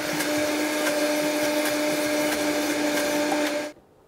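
Countertop blender motor running steadily with a constant hum as it purées pesto, then cutting off suddenly near the end.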